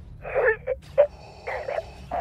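A man's strangled gasping and choking noises in short, broken bursts, acted as a stormtrooper being force-choked.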